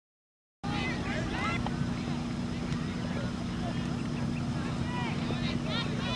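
Silence, then about half a second in, open-field ambience cuts in abruptly: wind rumbling on the camcorder microphone under a steady low hum, with scattered shouts and calls from players and spectators at a distance.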